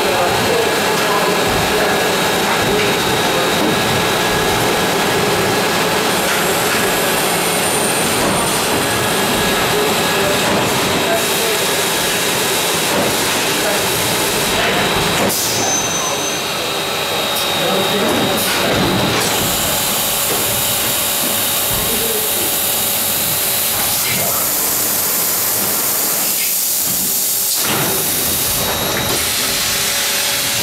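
Illig UA150 vacuum forming machine running: a loud, steady rush of air and hiss. The hiss turns brighter about two-thirds of the way through, and its middle range drops away briefly near the end.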